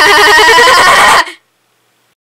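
A loud voice laughing with a fast, even warble in its pitch, cutting off suddenly just over a second in.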